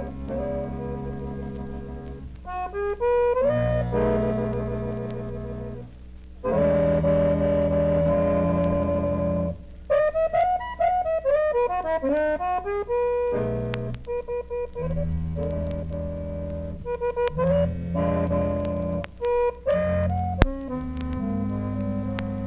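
Live small-group jazz: a quartet of accordion, guitar, flute and double bass, with held accordion chords and quick melodic runs in phrases broken by short pauses. One sharp click comes near the end.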